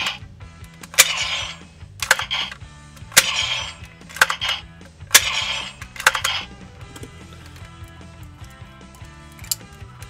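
Bandai Gokai Gun toy blaster firing its electronic gunshot sound effect, freshly powered on with new batteries: about once a second, seven shots, each a sharp crack with a short hiss after it. The shots stop about six seconds in, with one lone click near the end, over a low steady hum.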